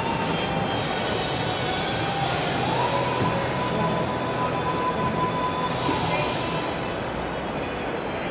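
Background music over a steady noisy din of a busy training room, with a held tone that slides up in pitch a little before halfway and stops about three-quarters of the way in.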